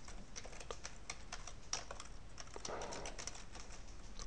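Computer keyboard typing: a run of light, irregular key clicks.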